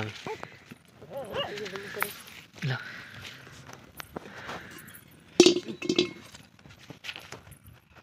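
Short, scattered bursts of a person's voice, with a few light clicks and knocks between them.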